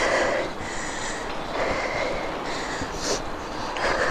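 A cyclist breathing hard after a steep climb, about one breath a second, over steady wind and road noise from riding.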